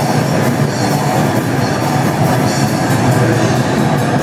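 Death-thrash metal band playing live: heavily distorted electric guitars riffing over fast drumming and cymbals, loud and dense without a break.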